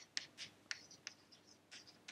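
Chalk writing on a chalkboard: a faint string of short taps and scratches as letters are written.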